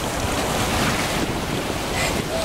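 Ocean surf washing in over the shallows in a steady rush, with wind buffeting the microphone.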